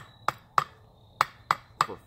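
Hatchet chopping into a long-seasoned Osage orange axe-handle blank: sharp strikes of steel biting into hard, dry wood, six in two quick runs of three, about three a second.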